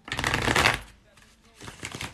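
A deck of tarot cards being riffle-shuffled: a quick ripple of cards flicking together for just under a second. A shorter, quieter burst of card noise follows near the end as the deck is squared.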